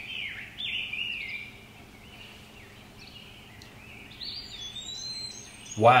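Birds chirping and singing: a run of short whistled notes, many sliding down in pitch, over a faint steady hum.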